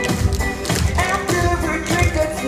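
Tap shoes of a group of dancers clicking on a stage floor in rhythm, over loud music.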